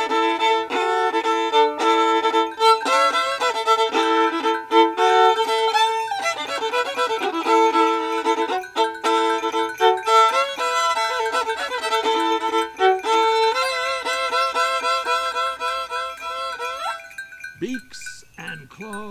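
Solo violin playing a lively run of notes, with wavering, vibrato-like held notes in the last few seconds and an upward slide to finish about a second before the end.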